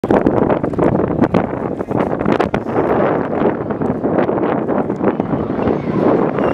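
Two drift cars running at high revs through a tandem slide, the engine noise rough and crackly and heavily buffeted by wind on the microphone.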